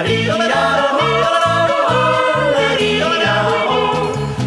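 A man yodeling in Alpine folk style, the voice leaping quickly between high and low notes, over a folk-band accompaniment with evenly repeating bass notes.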